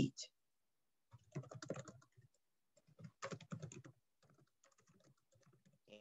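Faint computer keyboard typing in three short runs of keystrokes separated by pauses.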